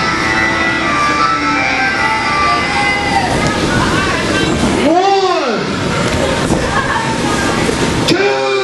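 Voices shouting and talking in a hall, with one drawn-out yell that rises and falls in pitch about five seconds in.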